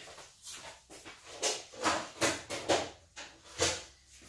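Paper and craft tools being handled on a work table: a string of short rustles and light knocks, about six over a few seconds.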